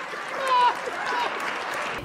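A studio audience laughing and applauding, heard as a steady hiss, with a man's high laugh sliding down in pitch over it during the first second.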